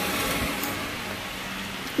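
A small hatchback car driving slowly past over a paved street, with tyre and engine noise that fades away about half a second in.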